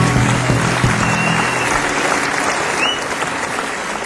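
Audience applauding at the end of a jazz trio piece, with the last notes of bass, guitar and piano dying away in the first second or so. The applause slowly fades toward the end.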